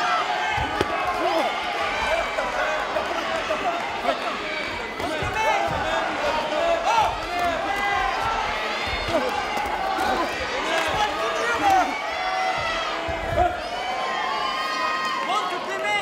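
Spectators and corners shouting over each other during a kickboxing bout, with dull thuds of kicks and punches landing scattered through it.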